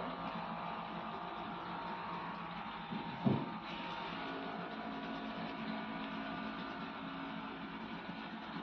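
A steady electrical hum, with one short thump about three seconds in.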